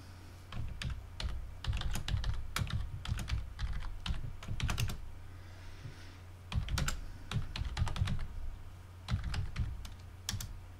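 Typing on a computer keyboard: quick runs of keystrokes, a pause of about a second and a half near the middle, then another run of keys, over a low steady hum. The keys enter a root password and then a shell command.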